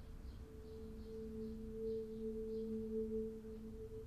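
Soft background score: two low, steady held notes an octave apart fade in within the first second and sustain. Faint short chirps sound high above them.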